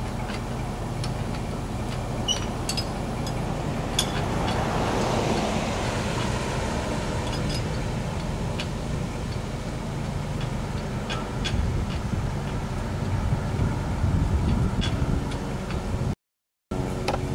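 A vehicle engine idling steadily, with scattered sharp metallic clicks from work on a trailer hitch and jack. A car passes by about four to seven seconds in.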